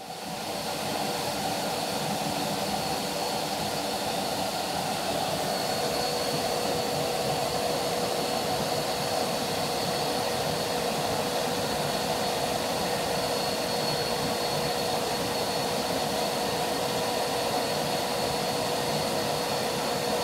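Canister vacuum cleaner running steadily: a loud, even rush of air with a high motor whine over it.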